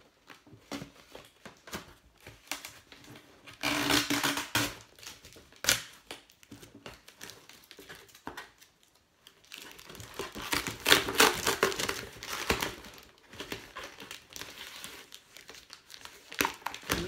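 Cardboard box and its packing being opened by hand: crinkling and tearing in irregular bursts, loudest about four seconds in and again from about ten to thirteen seconds in.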